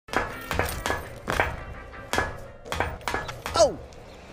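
Hard boot heels clomping on pavement in an uneven strutting step, about ten sharp knocks. A man's falling 'Oh' comes in with the last and loudest knock near the end.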